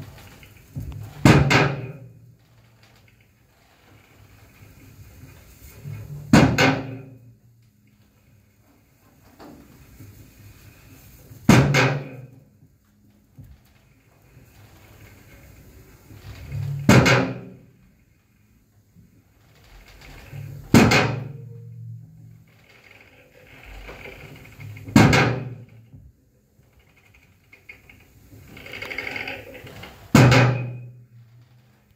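An amplified drum struck with a stick and run through noise electronics in an experimental noise set: a loud, heavy crash with a decaying tail about every four to five seconds, and quieter rough noise swelling up between the crashes.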